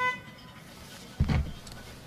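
A short single horn toot at the start, the finish-line signal for a crew crossing the line. About a second later comes a louder, brief low thump.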